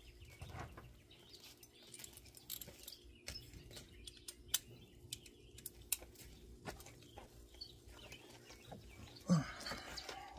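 Quiet outdoor ambience: birds chirping faintly, with scattered short clicks and a low steady hum.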